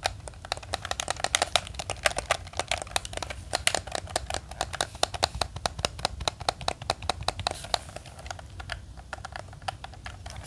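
Close-miked clicking of a Nintendo Switch Pro Controller's buttons and tapping on its plastic shell, a fast, irregular run of clicks like typing.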